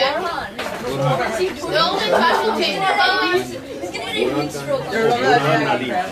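People chattering close to the microphone, several voices talking over each other with no clear words.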